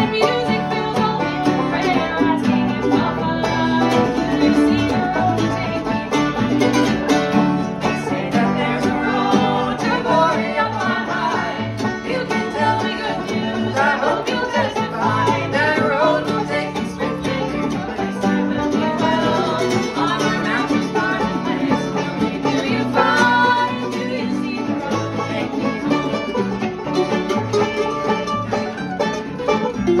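Acoustic string band playing a song: steel-string acoustic guitar, fiddle, mandolin and banjo, with a woman's lead vocal and men's voices singing harmony.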